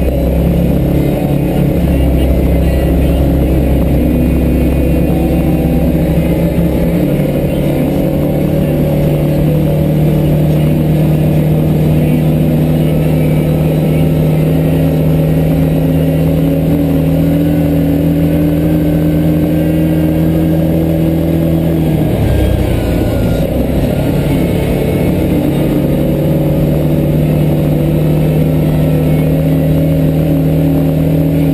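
Engine of an off-road vehicle running steadily while driving along a dirt trail, heard from behind the windshield. The pitch rises slowly through the middle, dips briefly about three-quarters of the way through as the throttle eases, then picks up again.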